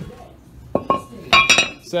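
Cast-iron front brake rotor from a 2005 Ford Explorer clinking as it comes off the hub and is set down on a concrete floor. A few sharp metallic clinks are followed by a louder ringing clank about one and a half seconds in.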